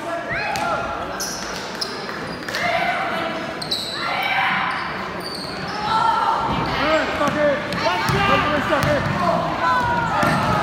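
Youth basketball game in an echoing gym: a ball bouncing on the hardwood, sneakers squeaking, and spectators' and players' voices calling out, with the voices getting louder about six seconds in as play picks up.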